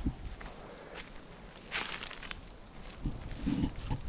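Footsteps on a gravel track, with a short rushing hiss about halfway through and a few low thuds near the end.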